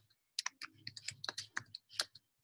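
Typing on a computer keyboard: a quick run of about seven keystrokes, starting about half a second in.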